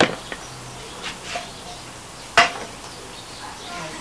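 A large aluminium cooking pot being handled, metal knocking on metal. There is a sharp knock at the start and a louder, ringing clang about two and a half seconds in.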